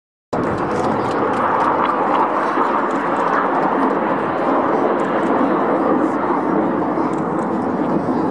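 Jet engines of a formation of Red Arrows BAE Hawk display jets, heard from the ground as a steady rushing noise that starts abruptly a moment in.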